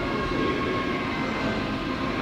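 Steady rumble and hum of a large indoor exhibit hall's ambience, with a few faint steady tones.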